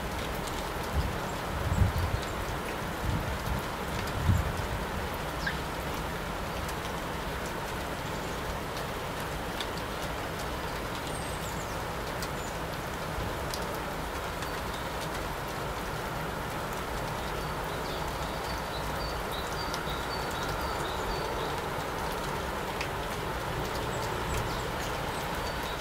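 Steady outdoor background noise, with a few low thumps in the first few seconds. Faint high bird chirps come in a short series near the end.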